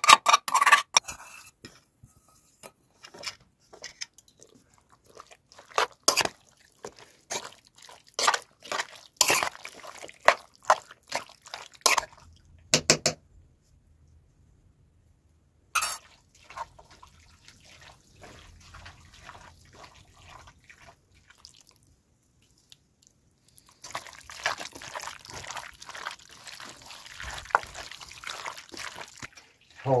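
Hands mixing chicken wings with a thick sauce in a metal bowl: irregular wet squelching and smacking sounds. The sounds stop for about two seconds in the middle and give way to a softer, steadier hiss near the end.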